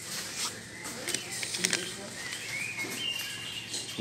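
Coffee bag rustling and crinkling in scattered short strokes as it is handled and lifted from the shelf, over faint shop background voices.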